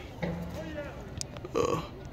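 A man's voice making wordless throaty sounds: a low drawn-out grunt, then a short loud throaty noise near the end.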